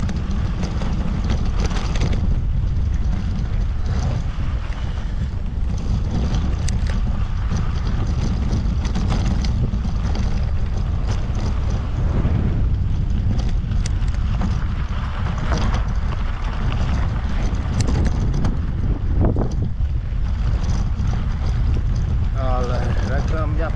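Wind rumbling steadily on a GoPro's microphone while cycling. Scattered knocks and rattles come from the bicycle rolling over a sandy dirt road.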